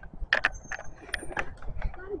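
Bicycle freewheel hub ticking in irregular clicks as the bikes coast, over a low rumble. There are two brief high squeaks in the first second or so.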